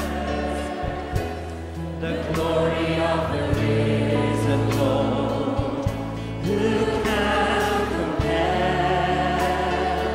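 Christian worship song sung by a group of voices over instrumental backing, with held bass notes and occasional percussive hits.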